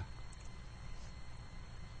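Faint, steady background hiss with a low hum: the recording's room tone in a pause between spoken sentences.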